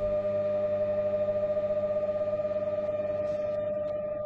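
A steady droning hum made of a few held tones, fading slowly.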